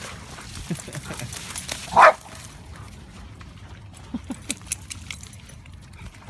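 Dogs at play, one giving a single loud bark about two seconds in, followed by a few shorter, quieter sharp sounds.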